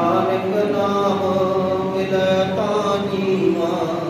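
Male voices chanting Sikh gurbani through microphones, a steady melodic recitation with long held notes.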